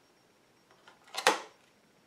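Skydio 2 drone battery snapping magnetically onto the underside of the drone: a single sharp plastic clack a little past the middle, after a couple of faint handling clicks.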